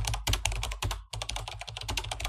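Rapid typing on a computer keyboard: a quick, dense run of key clicks with a brief pause about a second in.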